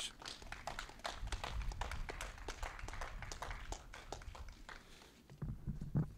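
Faint handling noise at a podium microphone: scattered light taps, clicks and rustles as the podium and microphone are wiped and handled, over a low rumble. A louder bump comes near the end as the microphone is adjusted.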